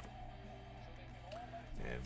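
Faint background music over a steady low hum, with a man's voice starting right at the end.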